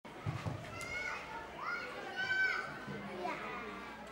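Children shouting and calling out in high voices, with two louder, drawn-out cries about a second and two seconds in.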